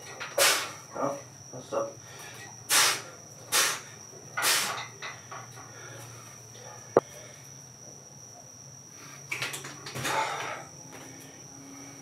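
Short, forceful breaths in quick bursts from a man working with a kettlebell, a single sharp click about seven seconds in, and under it a steady high-pitched cricket trill.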